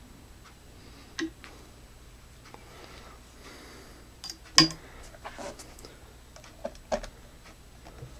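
Several light clicks and taps of an aux cable's 3.5 mm plug being handled and pushed into the speaker's front-panel jack, the sharpest click about four and a half seconds in.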